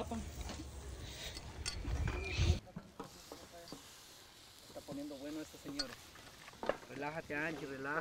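Low wind rumble on the microphone for the first couple of seconds, cutting off abruptly, then faint voices talking in the second half.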